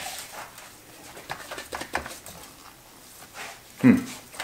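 Faint, scattered small taps and rustles of gloved hands handling a raw pork shoulder on a metal baking tray, ending in a man's short "hmm".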